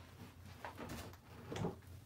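Faint handling sounds as a large reticulated python is hauled out of a plastic enclosure: a few soft knocks and scrapes, the loudest near the end.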